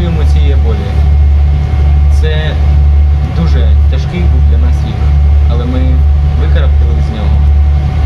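A young man speaking in Ukrainian over a loud, steady low drone from a ship's engine, heard inside the passenger cabin. A faint steady tone sits above the drone.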